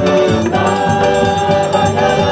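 Live forró-style band music: a piano accordion playing held chords and melody with a man singing and a steady beat underneath.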